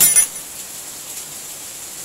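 Two quick, sharp metallic clinks with a short ringing tail right at the start: a steel hand tool knocking against the exposed clutch parts of a Kawasaki KLX150 just after the clutch-hub lock bolt has been tightened.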